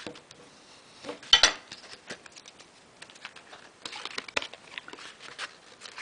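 Paper rustling and crinkling as a square is folded and its diagonal creased by hand, with light taps and scrapes of a clear plastic shoehorn used as a bone folder to press the crease. The loudest crackle comes about a second in, with more scattered rustles around the middle.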